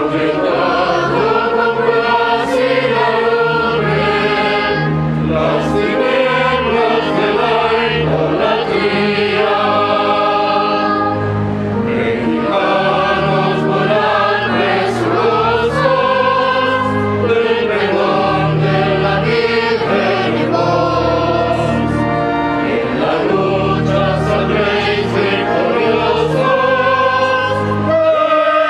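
A choir singing a hymn in phrases over steady, sustained low accompanying notes, as the closing hymn after the Mass's dismissal.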